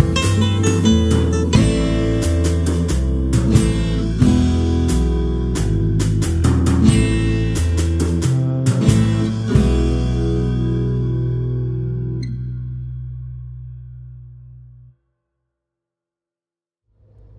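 Instrumental background music with drum hits and a stepping bass line; its final chord is held and fades out over several seconds near the end.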